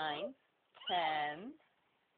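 A young child's voice calling out two drawn-out words about a second apart, counting aloud.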